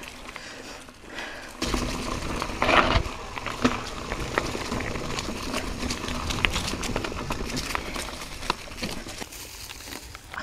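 Mountain bike riding over leaf-covered, rocky dirt singletrack: tyres crunching through leaves and dirt, with many sharp clicks and rattles from the bike over rocks and roots. Quieter for the first second or so, then louder and busier from about two seconds in.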